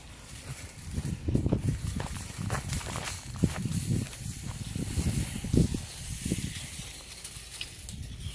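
Footsteps through dry grass and fallen leaves, uneven low thuds at a walking pace of about two a second over a steady high rustling hiss.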